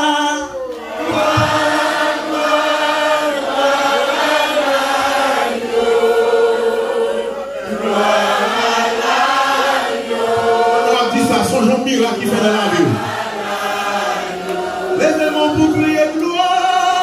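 A church choir and congregation singing a worship song together, with a man's voice leading. The notes are held in long phrases.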